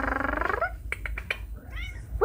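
Tabby cat meowing: one long meow that dips in pitch and turns up at the end, followed by a few light clicks and a short, higher call near the end.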